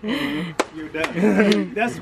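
Men's voices talking and laughing, with two short sharp clicks, about half a second and a second in.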